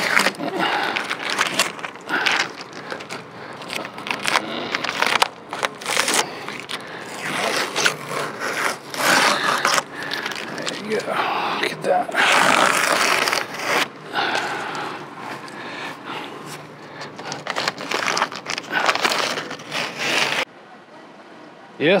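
Blue painter's masking tape being peeled off a truck's freshly Plasti Dipped bumper and grill, in repeated ripping, scraping pulls with crinkling as the tape comes away. The sound cuts off suddenly near the end.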